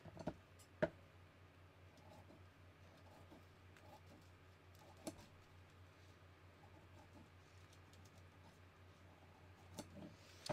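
Faint snips and clicks of dressmaker's shears cutting through thin pattern paper, with a sharp click about a second in and another about halfway, over a low steady hum.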